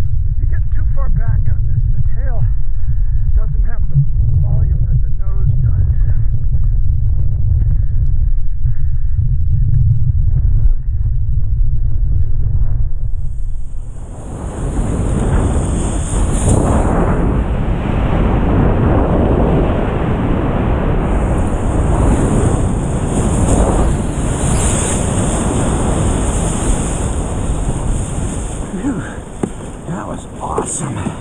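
Wind buffeting an action camera's microphone out on open water, a heavy low rumble. About halfway through it gives way to a louder rushing hiss of wind and water.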